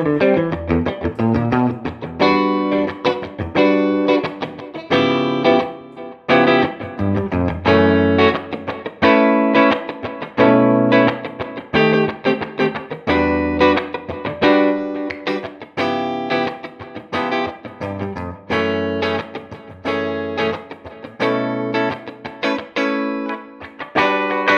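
Reverend Club King RT electric guitar with Revtron pickups, played through a Fender '57 Custom Tweed Deluxe amp: a rhythmic run of strummed chords, each struck and left to ring briefly before the next.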